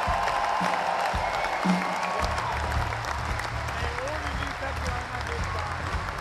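Concert audience applauding the crew, a dense steady clapping, with a low musical rumble from the stage joining about two seconds in.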